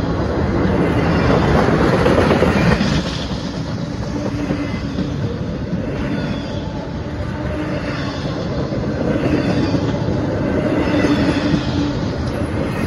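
Empty intermodal freight cars rolling past close by: a steady rumble and rattle of steel wheels on rail, loudest about two seconds in.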